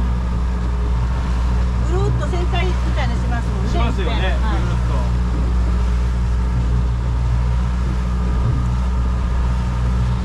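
Outboard motor of a small motorboat running steadily under way, a low drone, over a constant rush of wind and water. A voice is faintly heard for a few seconds early on.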